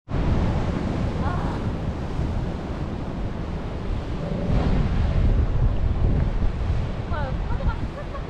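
Waves breaking and washing over black basalt shore rocks, with wind buffeting the microphone; a steady, even rush of surf.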